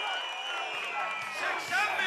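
Large open-air crowd, a mix of voices and cheering, with music starting faintly over the PA about a second in.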